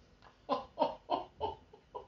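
A man laughing: a short run of about four chuckles in quick succession, starting about half a second in.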